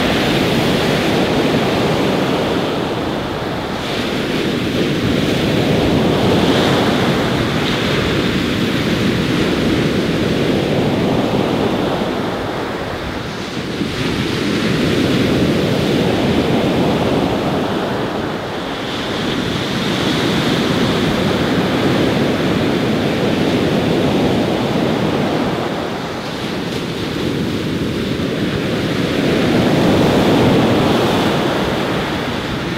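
Sea surf: waves breaking and washing in, a steady rush that swells and fades every several seconds.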